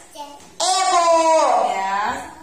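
A young child's voice calling out one long, drawn-out word in a sing-song tone, falling in pitch at the end.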